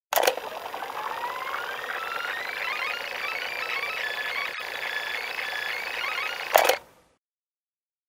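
A cassette deck's mechanical key clicks down and the tape winds at high speed in cue (rewind), giving a hissy, high, rising whine with a chirping, warbling run of sped-up recording. About six and a half seconds in, another key clack stops it. A last key clack comes near the end.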